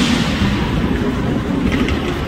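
JR West 289 series electric train rolling slowly over the tracks, opening with a sudden hissing burst that fades within about half a second, then a steady low rumble of wheels on rail with a few light clicks near the end.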